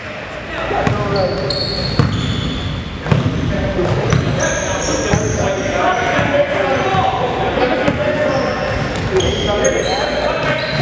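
Basketball game in a gym: a ball bouncing on the hardwood court and short high squeaks from sneakers, with indistinct voices of players and spectators in the large, echoing hall.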